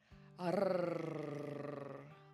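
A woman's long, drawn-out admiring "ohhh", sliding slowly down in pitch, over background music.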